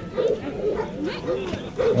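A dog barking a few short times over crowd voices.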